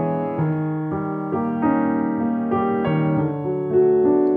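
Grand piano playing a slow passage of overlapping notes, each new note struck while the earlier ones keep ringing. The left-hand harmony is held down under the fingers (finger pedaling), so it sustains even when the pedal is raised.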